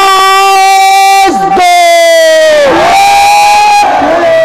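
Political slogan-shouting: a man's voice over a loudspeaker holds about three long, drawn-out calls, with a rally crowd shouting along.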